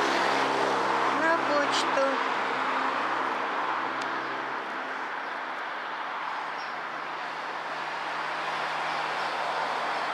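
Road traffic by a wide city street: a passing motor vehicle's steady engine hum and tyre noise, loudest in the first few seconds and fading away by the middle.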